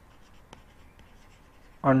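Faint scratching of a pen handwriting on the page, in short irregular strokes. A man's voice starts speaking near the end.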